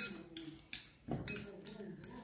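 Metal spoon clinking and scraping against a glass bowl while stirring cubed raw fish, a series of light, irregular clicks.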